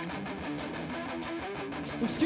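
Rock music with an electric guitar playing chords through an amplifier over a pre-recorded drum track. A sharp drum or cymbal hit lands about every 0.6 seconds, and there is no singing.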